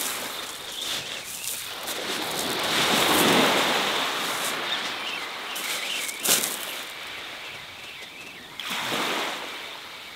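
Small waves breaking and washing up a shingle beach. The rush swells about three seconds in and again near the end, with a sharp click about six seconds in.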